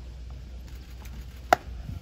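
A bullpen pitch smacking into the catcher's leather mitt: one sharp pop about one and a half seconds in, over a steady low rumble of wind on the microphone.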